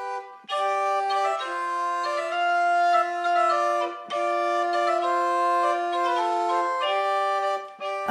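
Medieval portative organ playing slow sustained notes: a held lower note under a slowly changing upper line, with a brief break about four seconds in.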